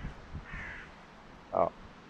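A crow cawing twice, harsh rasping calls fairly faint against the wood's background, one at the very start and one about half a second later.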